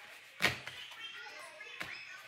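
A sharp knock about half a second in and a lighter one near the end, over faint background voices.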